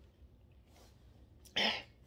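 A man's single short cough about one and a half seconds in, after a second and a half of near quiet.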